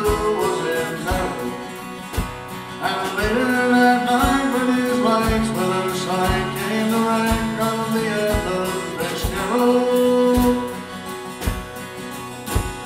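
Live country-folk band playing a passage between sung verses: strummed acoustic guitar and a steady drum beat under a gliding melody line.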